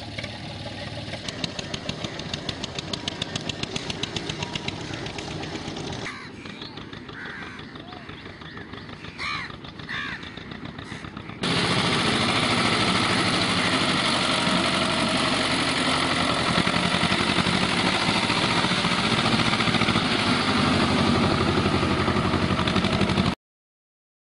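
Farm tractor engines running. First a tractor farther off, with a regular beat, and a few bird calls over a quieter stretch. Then, from about halfway, a tractor close by runs loudly and steadily until the sound cuts out briefly near the end.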